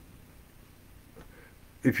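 A pause in a man's talk, with only faint room tone. His voice starts again near the end.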